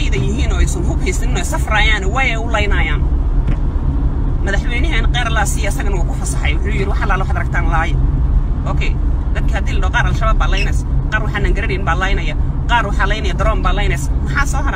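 A woman talking in bursts inside a car, over a steady low rumble of engine and road noise in the cabin.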